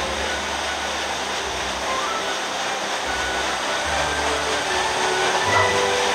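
Steady rushing of water, with soft background music laid over it.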